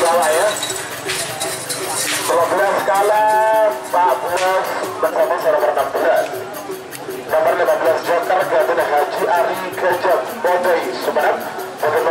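Music with a wavering, pitched melody over a quick, even beat, mixed with voices.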